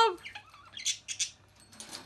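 Budgie moving about among its hanging bell toy and perches: a few short, high clicks about a second in, then a brief rustle near the end.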